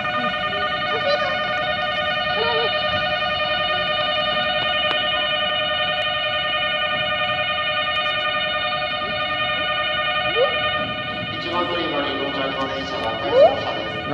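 Platform approach-warning bell: a steady, slightly warbling electronic ringing of several pitches at once, signalling that a train is arriving at the platform. It stops about eleven and a half seconds in, and voices follow.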